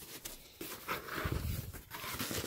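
A cardboard box being opened by hand, its flaps rustling and scraping, with a few small knocks.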